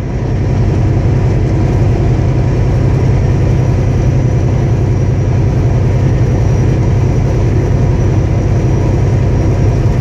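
Semi-truck driving at highway speed: a steady low engine drone mixed with road and wind noise, growing slightly louder in the first second.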